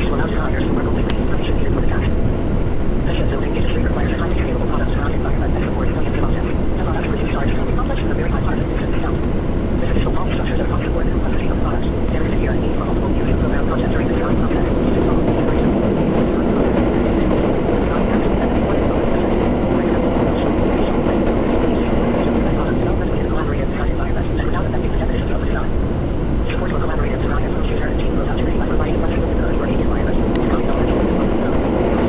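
Steady running noise inside a moving train carriage: the rumble of wheels on the rails and the car's drive, with small clicks and rattles scattered through it.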